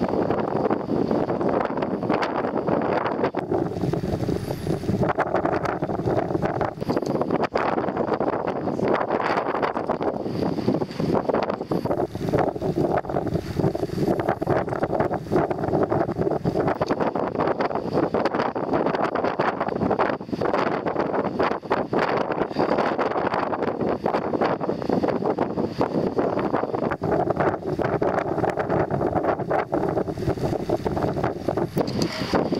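A boat's engine running steadily, with wind buffeting the microphone.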